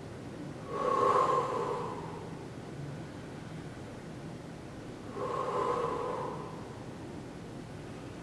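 A woman breathing hard while holding a plank: two long, heavy exhalations about four seconds apart, over faint room noise.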